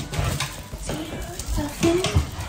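A domestic calico cat in heat meowing briefly, twice, as it is greeted and petted, with soft footsteps and handling noise.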